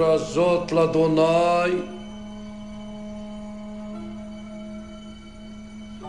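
A man chanting over a steady held drone. The chant breaks off about two seconds in, and the drone carries on alone.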